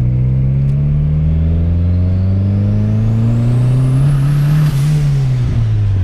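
Turbocharged VW Golf engine heard from inside the cabin, revving up steadily under acceleration with a high turbo whistle climbing alongside it. About five seconds in, the whistle cuts off and the revs drop.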